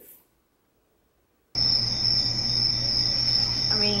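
After a second and a half of near silence, a cricket-chirping sound effect cuts in abruptly, a steady high chirring over a low hum. It is the comic "crickets" cue for an awkward silence, with a short laugh over it near the end.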